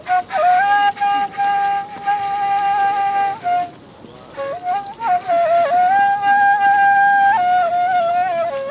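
Solo kaval, the Bulgarian end-blown flute, playing a slow melody of long held notes with short ornamental turns between them, broken once near the middle by a pause for breath.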